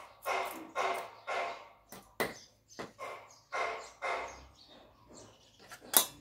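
A dog barking in a string of short barks, about two a second, while a knife chops on a wooden chopping block in sharp knocks; the loudest knock comes right at the end.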